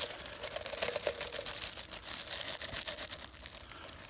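Diced meat sizzling in a mess tin over a small camp burner: a dense crackling sizzle that dies down over a few seconds as onions and peppers go in and the simmer ring keeps the heat low.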